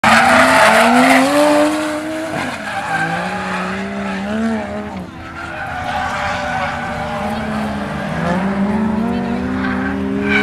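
Car drifting on a track: its engine revs rise and fall repeatedly over tyre squeal and skidding. It is loudest in the first two seconds, as the car passes close by.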